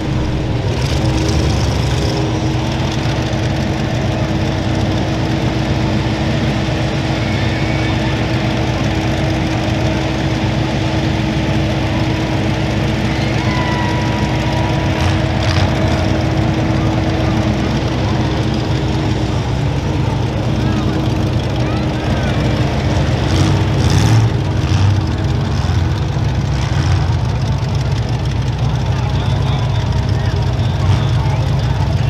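Steady diesel engine rumble from a Kubota compact track loader working among wrecked derby cars, mixed with other engines idling, with a brief louder surge late on.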